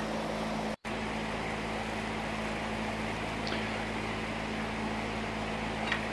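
Electric fan running steadily, a low hum with a rush of moving air. It cuts out for an instant just under a second in.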